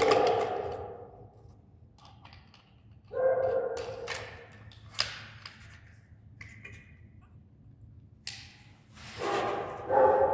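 Metal clicks and knocks of an angle grinder being handled as a thin cut-off disc and its flange are fitted onto the spindle by hand, with a few sharp ticks, the clearest about five seconds in and a little after eight seconds.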